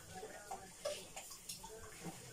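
Cooking oil poured from a plastic bottle into a pot of boiling water: faint pouring with a few small ticks and splashes.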